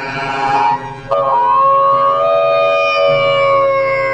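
A man crying out in distress: a short anguished cry, then from about a second in one long, high, drawn-out wail held without a break.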